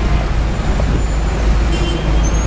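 A steady low rumble of outdoor background noise, heavy in the low end, with no other clear event standing out.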